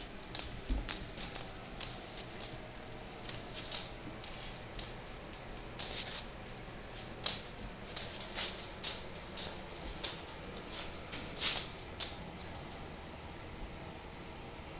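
Border Collie puppies chewing raw chicken necks and drumsticks: irregular sharp crunches and clicks of bone and gristle between their teeth, coming in small clusters until about twelve seconds in.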